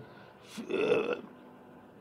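A short, low, throaty vocal sound from a man, about half a second long and starting about half a second in: a hesitation noise in a pause in his speech.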